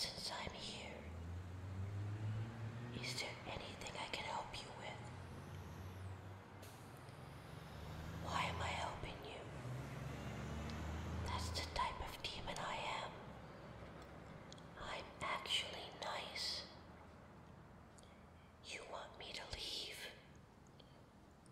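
A woman whispering in short phrases with pauses between them. A low rumble sits underneath for roughly the first half.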